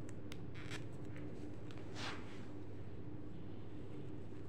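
Faint light ticks and a brief scratchy rustle of a metal knitting needle and hands working through knitted wool while picking up stitches along a neckline, over a steady low hum.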